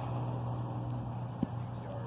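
Steady low motor hum at one pitch, with a single short click about a second and a half in.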